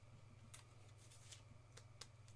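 Near silence with a steady low hum, broken by a few faint clicks and rustles of trading cards being handled.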